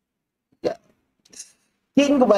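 A man's short, sudden burst of laughter, a single voiced yelp a little over half a second in, followed by a fainter breathy laugh about a second later. Dead silence surrounds the two sounds.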